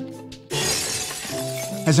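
Glass-shattering sound effect that starts suddenly about half a second in and lasts about a second, over soft background music.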